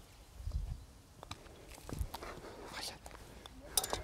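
Quiet outdoor ambience with soft footsteps on grass and a few faint clicks, the sharpest just before the end.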